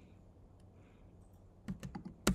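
Computer keys being pressed: a quick run of about four faint clicks near the end, over quiet room tone.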